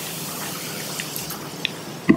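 Steady, even hiss of room noise at a microphone, with a few faint clicks about halfway through and near the end.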